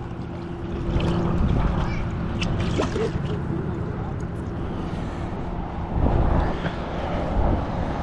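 Steady low hum of a boat motor running, over rumbling water and wind noise, with a few short knocks.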